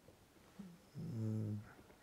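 A man's short hesitation hum, a low 'mmm' held steady for about half a second, in the middle of a pause in his talk.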